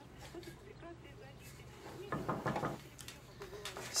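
Faint knocks and handling sounds of a wooden chair and its loose leg being turned over by hand, with a brief louder cluster of sounds about two seconds in.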